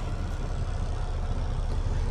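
Mack MP8 inline-six diesel of a 2012 Mack Pinnacle idling, a steady low rumble heard from inside the cab.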